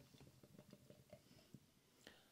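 Beer being poured from a can into a glass, heard only faintly: a quick, irregular run of soft little ticks and patter.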